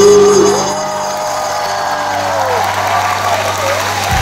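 The end of a live band song: the last chord cuts back about half a second in, and the audience applauds and cheers.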